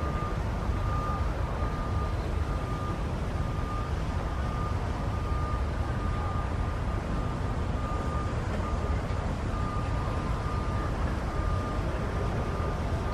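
Steady low outdoor rumble with a thin high-pitched tone that cuts in and out.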